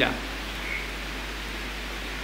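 The end of a spoken "yeah", then a pause filled only by steady, even background hiss of the room and recording.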